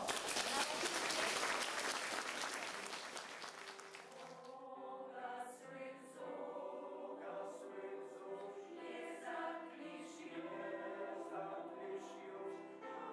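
Audience applause that fades out over the first four seconds. Then a mixed choir begins singing a new song, in sustained phrases.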